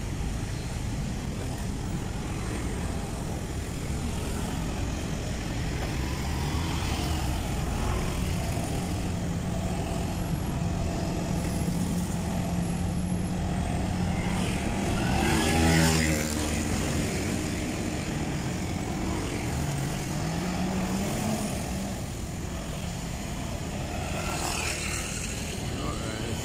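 Road traffic at a busy city street: cars and motorcycles driving past with their engines running. A steady engine drone runs through the middle, one vehicle passes louder about sixteen seconds in, and an engine revs up shortly after.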